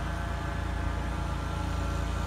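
A steady low mechanical hum, engine-like, with a faint steady high whine above it.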